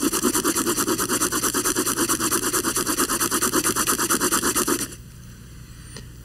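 Paper flip-card toy worked with a pencil: the top card, curled around the pencil, is rolled rapidly back and forth over the drawing beneath, giving fast even paper rubbing strokes, about nine or ten a second. It stops abruptly just before 5 seconds in.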